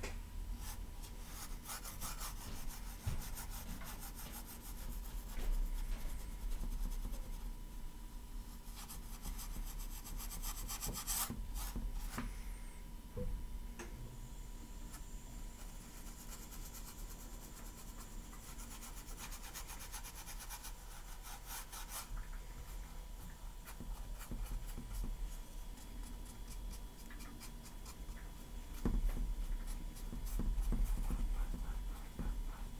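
A large flat paintbrush scrubbing acrylic paint onto a stretched canvas in quick, repeated back-and-forth strokes.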